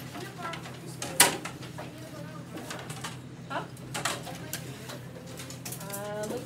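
Classroom bustle: children's low voices and a few sharp clicks and knocks as students handle their whiteboards and markers, the loudest knock about a second in, over a steady low hum.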